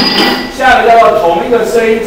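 A man's lecturing voice. A single sharp clink sounds right at the start, with a brief high ring after it.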